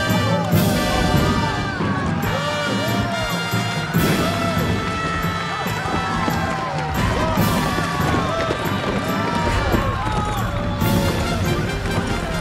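Dramatic background music with many voices shouting over it.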